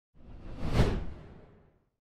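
A single whoosh sound effect for a title-card intro, with a deep low undertone, swelling to a peak just under a second in and then fading away.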